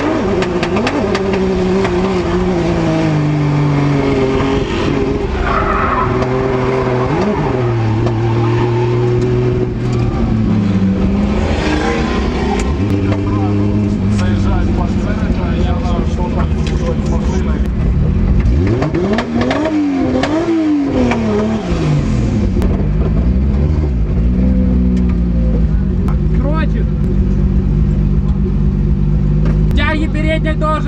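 Drift car engine heard from inside the cabin, its revs swinging up and down repeatedly through a drift run, with tyre squeal. Near the end the engine settles to a lower, steadier note as the car slows.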